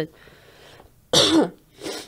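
A woman coughs once, short and loud, about a second in, right at a close studio microphone, followed by a softer second cough or throat-clear near the end.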